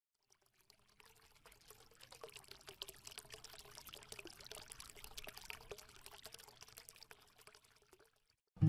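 Faint trickling, crackly sound like water being poured: a dense patter of tiny clicks that swells in about a second and a half in and fades away near the end.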